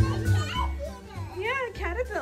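A toddler's high-pitched babbling and squealing, the voice rising and falling in pitch, loudest in the second half, over background music with repeated bass notes.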